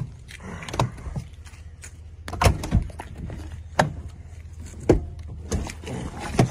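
Pickup truck door handle being pulled again and again, the latch clacking sharply about six times without the door opening: the truck's doors are locked.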